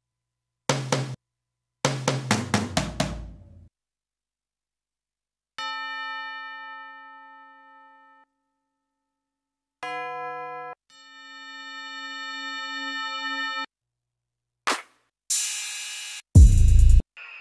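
One-shot samples from the Diginoiz Trap Roses pack previewed one at a time. First a single tom hit, then a fast tom fill of about seven hits that falls in pitch. Then three separate pitched bell tones (one ringing and fading, one short, one swelling up before it cuts off), and near the end a short hit followed by a bright crash cymbal.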